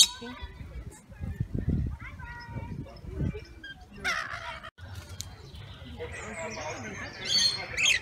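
Rainbow lorikeets calling, with sharp, high screechy calls about four seconds in and again near the end, and softer chatter between. A few low thumps sound early on.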